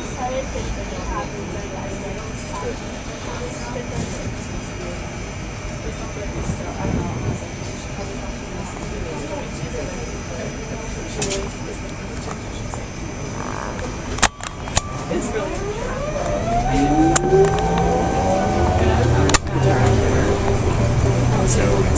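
Inside a moving Muni city bus: a steady ride noise, then sharp knocks and a drive whine that rises in pitch as the bus pulls away and speeds up near the end.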